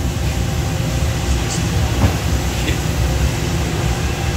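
Cooling tray of a 55 lb commercial coffee roaster running. Its blower motor pulls air down through the freshly roasted beans while the rotating agitator arms stir them to cool. A steady, low mechanical rumble.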